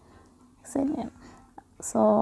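A person's voice in a pause between sentences: one short, soft spoken word about a second in, and a quick breath drawn in near the end.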